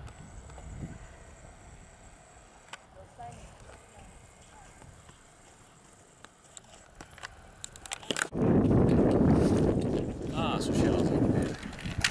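Quiet open-air ambience with scattered light clicks, then about eight seconds in a sudden loud rumbling noise with voices in it.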